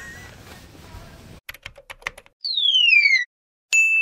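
Logo-intro sound effects after a moment of shop background noise: a quick run of sharp clicks, a falling whistle-like sweep, a brief dead silence, then a single bright ding near the end that rings and fades.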